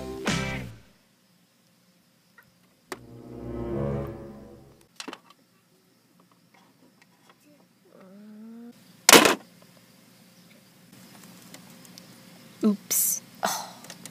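Music fades out near the start and a short musical swell follows. Then, about nine seconds in, comes a single loud thud, heard as something falling on the floor.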